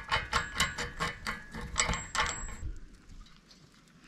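Quick, light metallic clicks, about four a second, as steel bolt, nut and washer hardware is worked by hand against the steel tracker bracket, stopping about two and a half seconds in.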